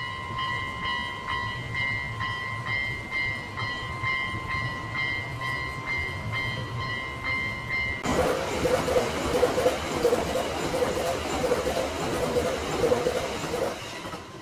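Japanese level-crossing warning bell ringing in a steady repeating clang while the crossing lights flash. About eight seconds in, a train passes close by with a loud rush and rhythmic clatter of wheels over the rail joints, nearly drowning out the bell.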